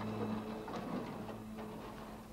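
Scattered light knocks and scrapes of canoes being handled and shifted at the water's edge, over outdoor background noise.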